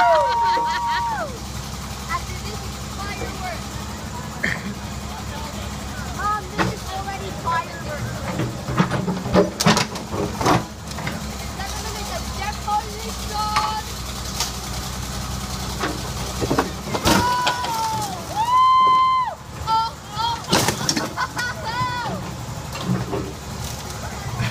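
Backhoe's diesel engine running steadily while its bucket bashes and crushes a wrecked car body: sharp metal bangs and crunches come at irregular moments, in a cluster about ten seconds in and again late on.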